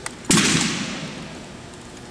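A single sharp crack of hands slapping a wooden drill rifle as it is launched into a toss, ringing out in a long echo that fades over about a second in a large hall.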